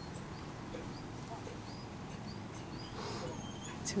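Open-field background with faint, short, high chirps scattered through, typical of small birds. About three seconds in there is a brief rustle, and a sharp click comes just before the end.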